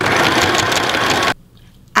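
Small electric sewing machine running at speed, stitching a fur hat to its lining, for about a second and a half, then stopping suddenly.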